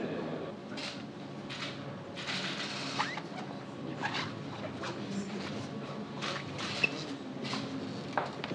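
Steady low room hum with a scattered series of short rustles and clicks.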